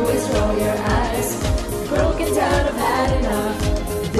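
A woman singing a pop song live into a handheld microphone, backed by a band with a steady kick-drum beat.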